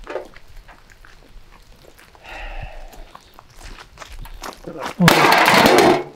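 Quiet rustling and small handling clicks as a first-aid kit on the forest floor is picked at and opened, followed near the end by a loud rush of noise lasting about a second that cuts off abruptly.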